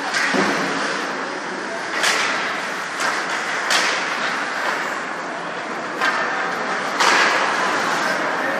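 Ice hockey play heard in a rink: a steady wash of arena noise and voices, broken about half a dozen times by sharp cracks and scrapes from sticks, skates and the puck on the ice and boards.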